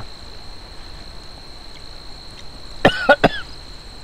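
A man coughing about three times in quick succession near the end, set off by tasting salty dry soup-mix powder.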